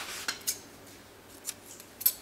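Scissors snipping through medium-weight yarn: a few short, sharp snips in the first half second and one more about a second and a half in.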